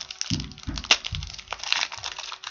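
Foil hockey-card pack wrapper crinkling and crackling as it is torn open, with one sharp crack about a second in and a few dull bumps of handling.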